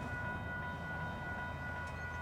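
Locomotive air horn held on one steady chord, with a low rumble underneath.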